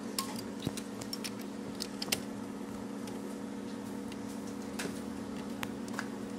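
Scattered small clicks and taps of fingers handling plastic connectors and metal parts inside an opened LCD TV, several in the first two seconds and a few more near the end, over a steady low hum.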